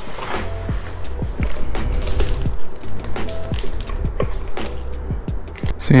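Background music with a steady, repeating bass line, with short irregular crinkles of plastic packaging being handled.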